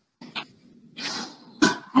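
A person's short, breathy cough about a second in, heard over a video-call line.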